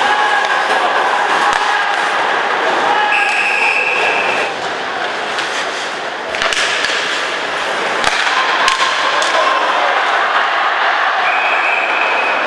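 Ice hockey arena sound: steady crowd noise with sharp clacks of sticks and puck hits, and a referee's whistle blown twice, about three seconds in and again near the end, the second stopping play for a penalty call.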